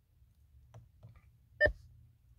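A single short electronic beep from the Mercedes-Benz S550's voice control system about one and a half seconds in, the prompt tone that it is ready to listen. It sounds over a faint steady low hum in the car cabin.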